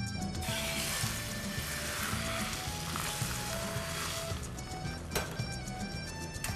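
Beaten egg poured into a hot, oiled frying pan sizzling, starting sharply about half a second in and dying down after about four seconds as it spreads into a thin egg crepe. A single click comes near the end.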